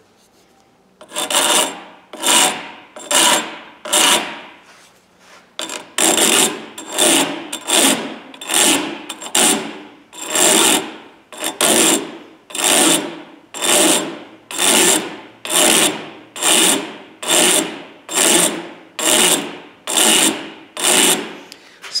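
Hand file rasping on the hardened steel tip of a broken screwdriver clamped in a vise, reshaping the damaged tip. The strokes are steady and even, about one a second, with a brief pause early on.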